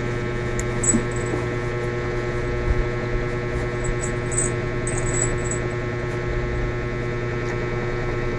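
A steady electrical buzzing hum, with a few faint clicks and small mouth sounds of someone chewing soft rice cake off a fork.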